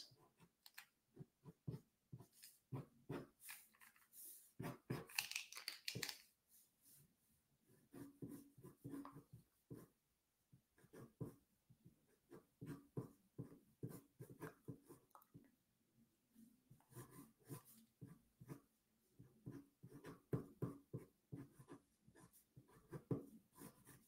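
Very faint, irregular scratching of a blue-lead mechanical pencil sketching strokes on paper, in short bursts with gaps between them.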